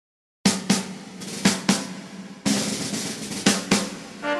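Drum kit playing a music intro: pairs of hits about a quarter second apart, once a second, starting about half a second in, with one longer ringing hit about two and a half seconds in.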